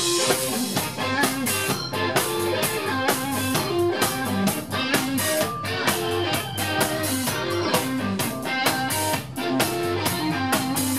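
Live blues-rock band playing: a Stratocaster-style electric guitar over a drum kit, the drums keeping a steady beat.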